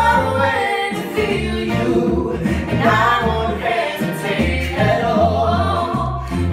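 A man and a woman singing a slow pop ballad as a live duet into microphones, their voices weaving together over a small band with keyboard and sustained bass notes.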